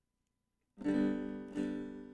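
Acoustic guitar strummed: the first chord comes in sharply about a second in and a second strum follows about half a second later, each left ringing.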